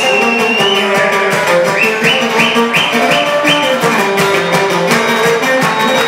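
Live Cretan folk music: laouta strummed under a bowed lyra melody, with a run of short upward-sliding high notes about two to three and a half seconds in.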